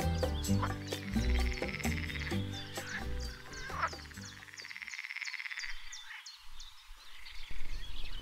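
Soft background music that fades out about halfway through. Under and after it, a chorus of small animals calls in repeated buzzing bursts about a second long, with short high chirps between them.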